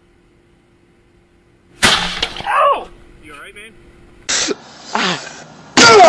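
Near quiet for about two seconds, then a sudden loud bang, followed by people shouting and yelling.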